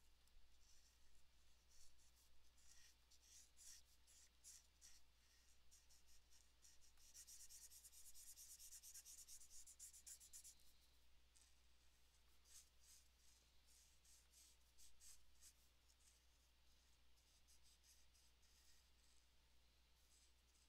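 Faint scratching of a coloring marker's nib stroking over paper in many short strokes, with a longer run of steady back-and-forth coloring from about 7 to 10 seconds in. A steady low hum sits underneath.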